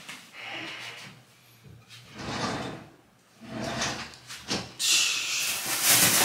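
Short scraping and rustling sounds of things being handled, getting louder near the end as someone moves right beside the microphone.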